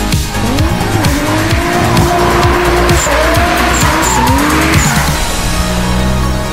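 Toyota Supra's 1JZ inline-six revving up and down through a drift, tyres squealing as the car slides, with the squeal loudest about four to five seconds in. Background music with a beat plays underneath.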